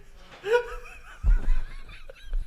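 A young man laughing in a few short snickers.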